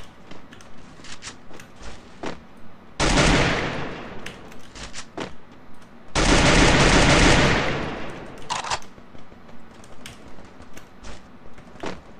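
Video game gunfire: two long loud bursts of automatic fire, about three seconds in and again about six seconds in, with scattered short clicks between them.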